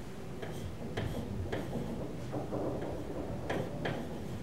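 Pen tip tapping and sliding on an interactive smart board's screen during handwriting: a series of light, irregular clicks.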